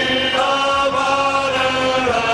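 Men's vocal group singing a gospel song together into microphones, holding long sustained notes.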